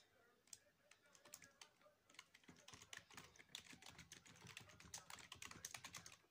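Faint typing on a keyboard: a few scattered key clicks, then a quick run of clicks from about halfway through as an email is typed.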